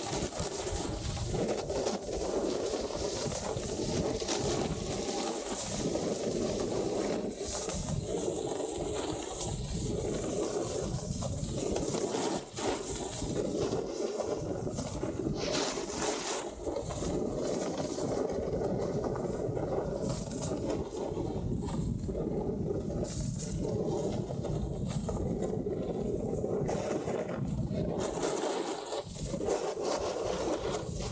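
Snowboard sliding and carving over groomed snow at speed, its base and edge scraping the surface, with wind rushing over the microphone of a rider-carried camera; a steady rush with no breaks.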